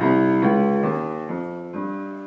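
Grand piano playing notes an octave apart in a steady rhythm, a new note or chord struck about twice a second and each left ringing as it fades.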